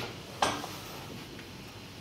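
A single short knock about half a second in, from a laptop and a small device being handled on a glass-topped table, then a low steady room hiss.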